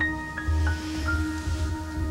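Background music: a slow synthesizer underscore of held notes stepping from pitch to pitch over a low bass.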